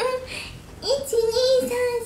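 A woman's high-pitched voice, singing or drawn out with no clear words: a short sound at the start, then one long, nearly level note held from about halfway in.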